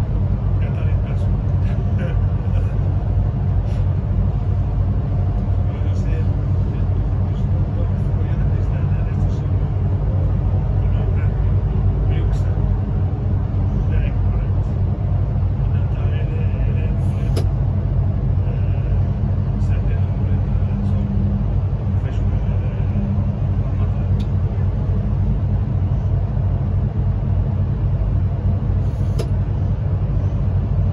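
Steady low running rumble of a train heard from inside the driver's cab, with scattered light clicks and knocks from the wheels and track.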